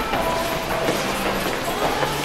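Many pairs of feet stepping and shuffling on a gym floor as a group of boxers moves in stance, an even, busy patter.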